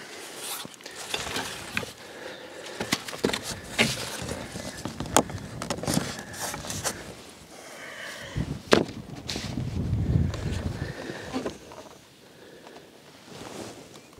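Handling noise from a plastic spirit level being fitted against a cardboard target board: scattered clicks, knocks and scrapes, with a brief low rumble about ten seconds in.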